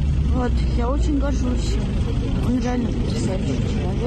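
A woman talking in her own voice, not voiced over, over a steady low rumble of outdoor background noise.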